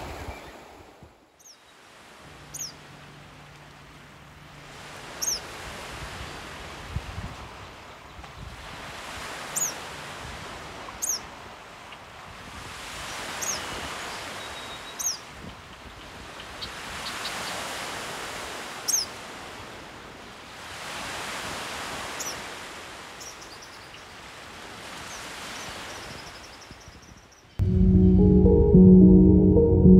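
Small waves washing onto a lake shore, the noise swelling and fading every few seconds, with a bird giving short, high chirps again and again.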